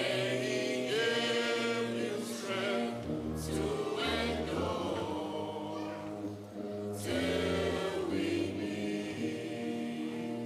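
A school ensemble performing a slow, sentimental piece live: sustained chords over low bass notes that change every second or so, with voices singing.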